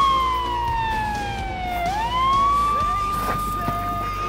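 Police siren wailing: a single tone falls slowly, sweeps back up about two seconds in, and holds high.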